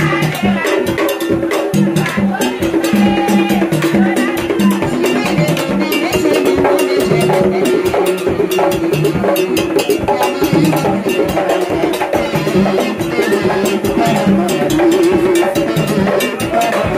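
Haitian Vodou ceremonial music: a fast, dense drum-and-percussion rhythm with voices singing over it.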